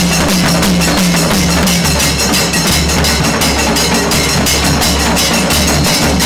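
Kailaya vathiyam temple ensemble playing loud, fast, unbroken drumming on stick-beaten cylindrical drums with hand cymbals, over a steady drone from blown conch shells.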